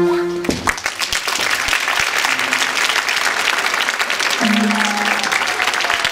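A group of electronic keyboards holding a final chord that cuts off about half a second in, followed by audience applause.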